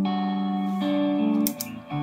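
Overdriven Fender American Stratocaster playing sustained lead notes over a looped backing part, pulsed by a Woodpecker Trem tremolo pedal (a clone of the EarthQuaker Devices Hummingbird) running into the front end of a Victory V40 Duchess valve amp. A couple of sharp clicks come about three-quarters of the way through.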